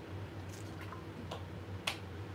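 A few short, light clicks, four in all, the sharpest near the end, over a low steady room hum.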